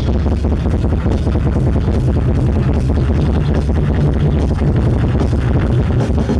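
Live rock band playing: a drum kit keeping a steady, even beat under bass guitar and electric guitars, loud and continuous.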